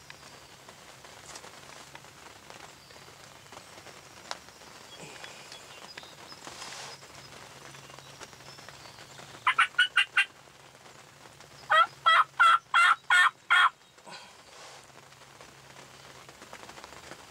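Wild turkey calling in two short series of loud, evenly spaced yelping notes: four notes about ten seconds in, then six more a second later.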